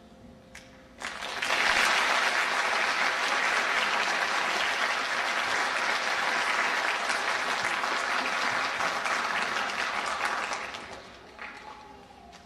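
Audience applauding at the end of a sung piece, breaking out suddenly about a second in, holding steady, and dying away near the end.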